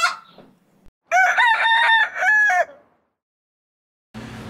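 A rooster crowing once, about a second in: a single cock-a-doodle-doo of a few short notes ending in a longer held note that drops at the end.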